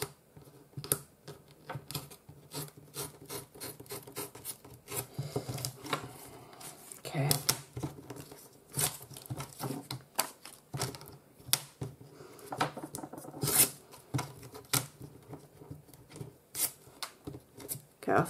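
Paper being torn along the edge of a deckle edge ruler and handled on a craft mat: an irregular run of short rasping rips, rustles and small clicks.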